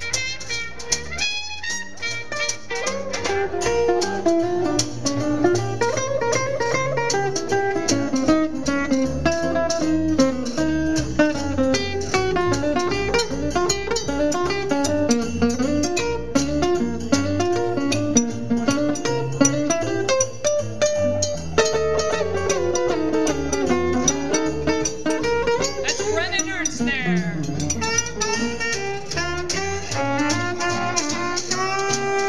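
Small acoustic jazz band playing an instrumental chorus in swing time: a horn melody line over strummed archtop guitar and plucked upright bass.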